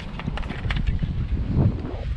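Wind buffeting the microphone as a low, steady rumble, with a few short knocks and clicks from handling as a plastic jug is capped.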